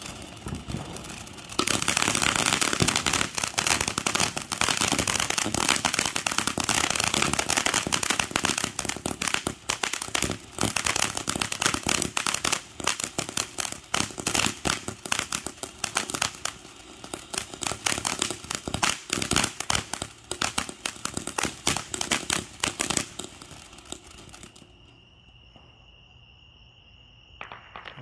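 A ground fountain firework spraying sparks with a dense, continuous crackle, loud from a couple of seconds in, then thinning out and dying away after about twenty-three seconds as it burns out.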